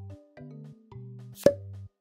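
Light background music, a sparse melody over separate bass notes, with one sharp pop sound effect about one and a half seconds in, the kind of edit sound that marks a change of caption.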